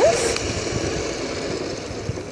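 Electric scooter in motion: a faint steady motor whine under wind buffeting the microphone and road rumble, gradually getting quieter.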